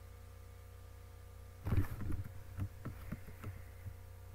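Steady low electrical hum, then from about halfway through a quick irregular run of sharp clicks and taps from a computer keyboard and mouse, the first the loudest.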